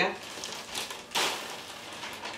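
Plastic postal bag rustling and crinkling as it is handled and opened and a jumper is pulled out, in irregular swells.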